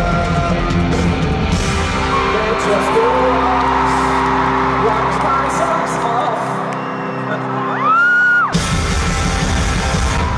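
Live rock band with an arena crowd singing along, ending on a held guitar chord topped by a loud rising scream; the music stops suddenly about eight and a half seconds in and the crowd cheers and screams.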